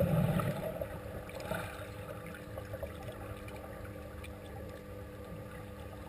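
Underwater sound in a swimming pool after a swimmer's dive entry: the rush of churning water and bubbles fades over the first second, leaving a steady low underwater hum with faint crackling of bubbles.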